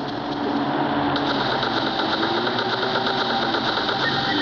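An engine-like mechanical sound runs under a dense noisy background, and a rapid, even rattle comes in about a second in.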